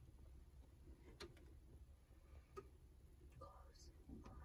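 Near silence with a low background hum, broken by two faint clicks about a second and a half apart and a soft whisper near the end.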